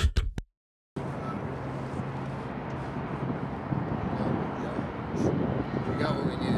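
A music track cuts off, half a second of dead silence follows, then steady outdoor background noise: a low rumble of traffic with wind on the microphone.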